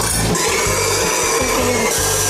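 Wire whisk beating a mixture in a stainless-steel bowl: a steady scraping hiss that starts about half a second in, over background music.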